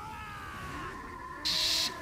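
Anime soundtrack playing at a lower level: a long, high, thin tone that slowly falls in pitch, joined by a short burst of hiss about a second and a half in.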